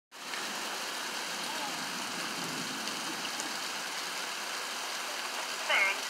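Steady heavy rain falling, an even hiss that holds at one level throughout. A person's voice breaks in briefly just before the end.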